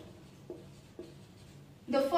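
Felt-tip marker writing on a whiteboard: a few short, faint strokes about half a second apart.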